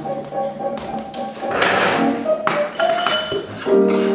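Live piano music with several held notes, mixed with light taps and knocks as people move about on a stage and sit down on chairs.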